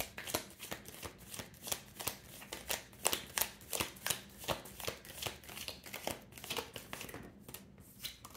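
A tarot deck being shuffled by hand: a quick, uneven run of soft card flicks and slaps, several a second, as a clarifier card is sought.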